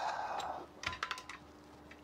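A quick cluster of small metallic clicks and rattles from parts of a Barrett M82A1 rifle being handled during disassembly, about a second in.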